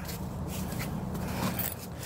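Rustling and scraping from someone walking with a handheld phone: footsteps and handling noise, a few faint irregular ticks over a low steady rumble.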